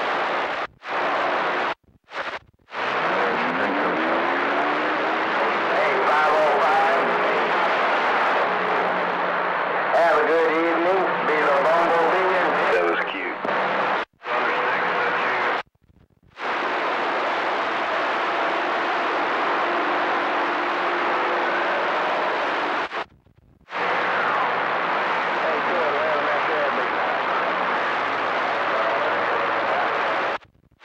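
CB radio receiver on channel 28 (27.285 MHz) picking up weak skip transmissions: steady static with garbled, hard-to-make-out voices buried in it. It cuts to silence several times as signals drop out, and a whistle slides up in pitch about three seconds in.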